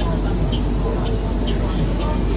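New Flyer XDE40 diesel-electric hybrid bus standing at a stop with its front door open, its drivetrain giving a steady low rumble, with a faint high tick repeating about twice a second.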